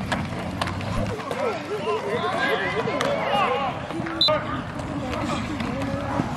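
Several voices shouting and cheering over one another while a football play runs, with a few sharp clicks. A low steady hum stops about a second in.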